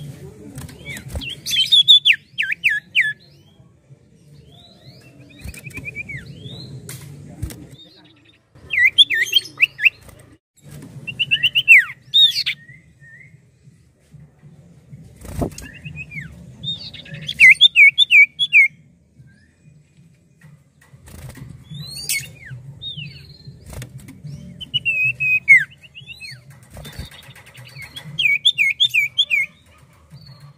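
Common iora (cipoh) singing: bursts of quick, high whistled notes that drop in pitch, repeated every few seconds over a low hum, with a few sharp clicks in between.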